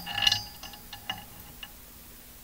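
Light clinks and taps of a hard object, each ringing briefly: a cluster at the start, then three or four fainter taps over the next second and a half.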